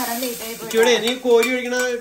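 Hot tempering poured from a steel pan into a pot of curry, sizzling as it lands near the start, with the pan clinking and scraping against the pot's rim. A voice holding steady notes runs underneath.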